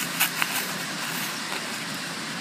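Steady outdoor background rush, with two faint ticks in the first half second from fingers working seedlings out of a plastic seedling tray.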